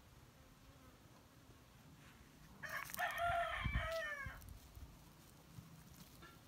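Chicken calling: a run of arching, pitched notes lasting about two seconds, starting a little over two and a half seconds in.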